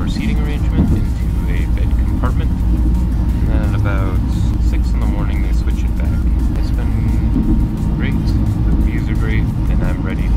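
Steady low rumble of a sleeper train running, heard from inside the carriage.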